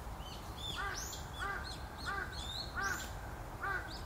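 A bird giving a series of five loud, evenly spaced calls, about one every two-thirds of a second, with fainter high chirps from other birds throughout.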